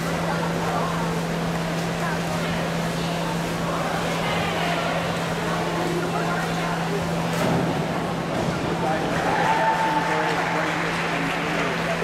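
Echoing indoor-pool ambience: a steady ventilation hum under crowd chatter. A springboard clacks at takeoff about seven and a half seconds in, and a splash and louder voices follow a couple of seconds later.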